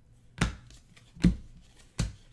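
2017-18 Donruss basketball trading cards being sorted by hand, set down with sharp taps against the tabletop: two taps under a second apart, and a third at the very end.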